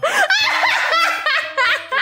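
A person laughing in a quick run of high-pitched giggles and snickers that rise and fall in pitch.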